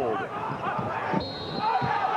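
Basketball game sound in an arena: the ball bouncing and crowd noise, with a referee's whistle blowing a foul, a steady high tone from a little past a second in.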